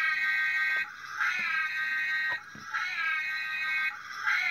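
Electronic siren of the Playmobil Ghostbusters Ecto-1 toy car, a rising wail that holds its pitch, breaks off briefly and rises again, about three times, every second and a half or so.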